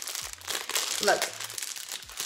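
Thin clear plastic bag crinkling as it is handled in the hands, with an irregular crackle throughout.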